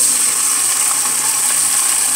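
Sliced onions sizzling loudly in hot oil, the sizzle starting suddenly as they hit the oil and then holding steady.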